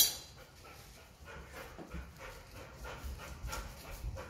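A dog panting softly in quick, even breaths. A sharp click comes right at the start.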